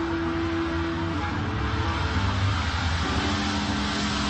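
Electric guitar through a loud amplifier holding long sustained notes over a low rumble. One held note stops about a second in, and lower notes come in near the end, while a hiss builds underneath.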